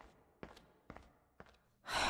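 Four faint, sharp clicks, evenly spaced about half a second apart.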